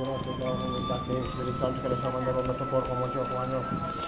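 Indistinct voices without clear words, over a thin steady high tone that edges slightly upward in pitch.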